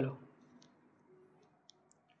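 Near silence while a cloth is wiped across a whiteboard, broken only by a few faint, short clicks about half a second in and twice near the end.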